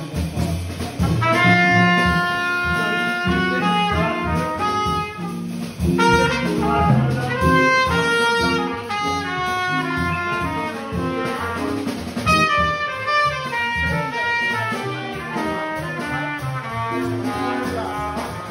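Live jazz combo: a trumpet plays a melodic line of held and moving notes over bass and drums.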